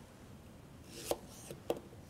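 Kitchen knife cutting a zucchini chunk lengthwise on a wooden cutting board. It is quiet at first, then the blade and the cut pieces make three light knocks on the board in the second half.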